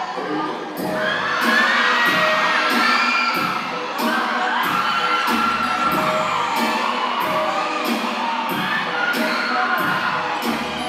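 Dance music with a steady beat played loud in a hall, with the audience cheering and shouting over it throughout.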